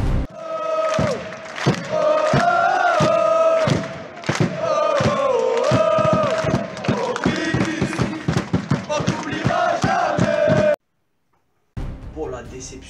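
Football supporters chanting in the stands, with one man's voice close to the microphone singing along, over regular sharp rhythmic hits. The chant cuts off suddenly about eleven seconds in.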